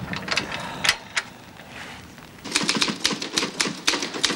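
Typewriter typing: a rapid run of keystrokes, about eight a second, starts just past halfway through. Before it come a few scattered sharp clicks and a quieter stretch.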